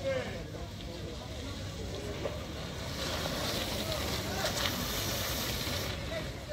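Wind rumbling on the microphone, with scattered voices. From about halfway a hiss builds as cycle speedway bicycles ride past close by on the shale track.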